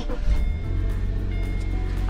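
Subaru boxer engine starting from cold about a third of a second in, then idling with a steady low hum. Music plays underneath.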